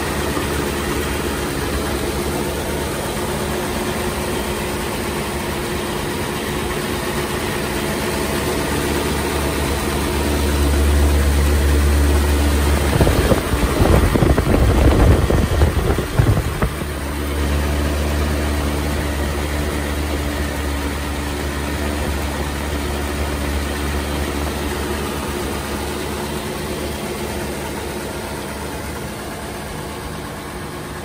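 A 1935 Ford's flathead V8 idling steadily with the hood open. About halfway through there is a louder, rougher stretch of a few seconds.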